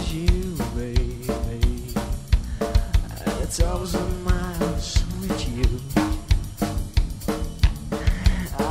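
Rock band playing an instrumental passage with no singing. A full drum kit of snare, kick drum and cymbals keeps a steady beat under sustained pitched instrument lines.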